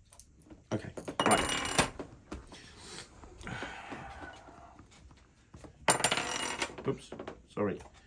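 Small metal parts clinking and rattling in two loud bursts, about a second in and again around six seconds, with softer scraping between: a small metal torch being handled in pieces.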